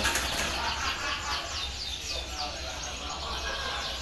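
A dense chorus of caged birds chirping: many short, overlapping chirps, each falling in pitch.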